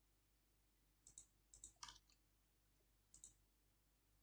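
Faint clicks of a computer mouse and keyboard in three short clusters, the first about a second in and the last about three seconds in, against near silence.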